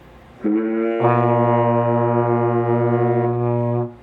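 Two tenor trombones holding a low B-flat together for about three and a half seconds, the open first-position note. The tone fills out with a strong low fundamental about a second in, and the note stops just before the end.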